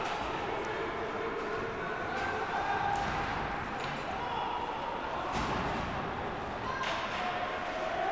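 Ice hockey rink sound from live play: a steady hum of arena voices with three sharp knocks from the play on the ice, spaced about a second and a half apart.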